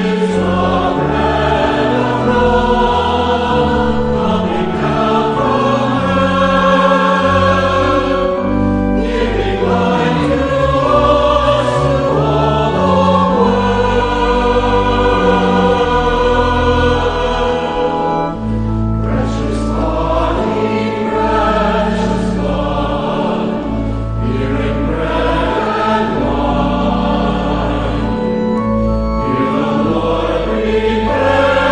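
A choir singing a hymn with organ accompaniment: held chords over steady sustained bass notes, without a break.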